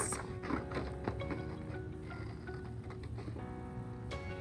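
Soft background music, with faint irregular snips of scissors cutting through paper.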